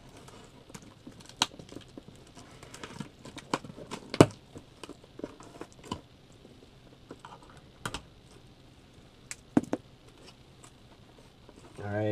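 A cardboard shipping box being opened: a knife slitting its packing tape, then the flaps pulled open, giving scattered, irregular clicks, taps and scrapes.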